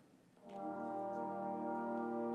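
Orchestral ballet music coming back in after a near-silent pause: a held chord of several notes starts about half a second in and sustains.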